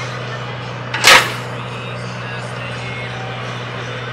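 An air-powered apple cannon fires once about a second in: a short, loud burst of compressed air, over a steady low hum.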